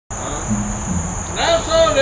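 Crickets chirring in a steady high drone, with a couple of low bass notes in the first second; near the end a man's voice starts singing the opening line of an old-time country song.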